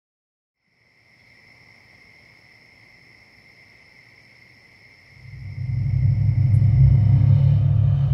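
Cinematic intro sound design: a faint, sustained drone of two high held tones from about a second in, then a loud deep bass rumble swelling in about five seconds in.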